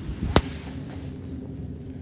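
A single sharp click a little over a third of a second in, just after a brief low rumble, followed by faint steady room noise.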